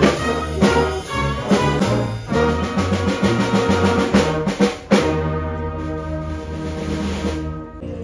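Community concert band of brass, woodwinds and percussion playing, with sharp percussion accents on the beat. A loud accent about five seconds in leads into a held final chord that stops shortly before the end.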